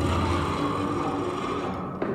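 Wooden organ, an experimental instrument of suspended wooden planks strung with wire, sounding a sustained drone with several steady held tones as a wire attached to a plank is drawn by hand; the upper part of the sound fades away near the end.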